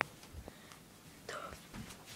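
A sharp click at the start, then faint handling rustle from a handheld phone being swung around, and a short breathy whisper a little past halfway.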